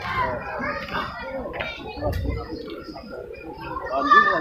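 Overlapping voices of a gathered crowd talking at once, with no single speaker standing out.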